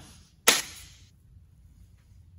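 A single sharp crack about half a second in, dying away over about half a second, followed by faint room tone.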